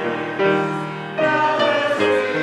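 A choir singing a hymn in held chords that change about every second.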